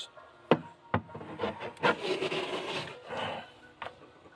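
Hard plastic handling: two sharp clicks, then about two seconds of scraping and rubbing as a plastic DE scoop is worked against a bucket, with a short laugh in the middle.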